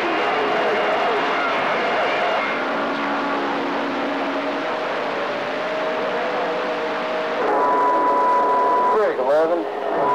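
CB radio receiving long-distance skip: a steady wash of static with faint, garbled voices and thin whistling tones buried in it. Near the end a strong steady whistle comes in for about a second and a half, followed by a voice through the speaker.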